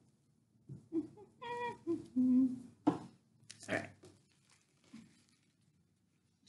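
A woman laughing softly and making short hummed vocal sounds, with a sharp tap about three seconds in.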